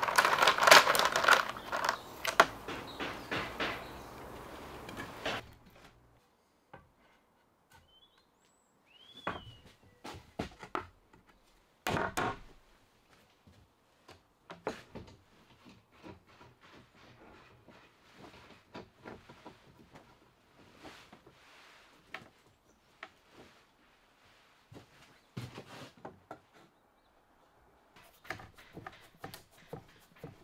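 Pine window-frame parts being knocked together and bar clamps being fitted and tightened on a workbench: scattered wooden knocks and clicks. A denser run of sound fills the first five seconds and stops abruptly, and a single louder knock comes about twelve seconds in.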